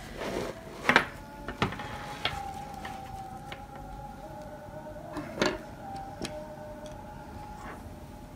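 Scattered small clicks and rustles of hands working a metal zipper end-stop onto the end of a zipper tape, over a faint steady whining tone.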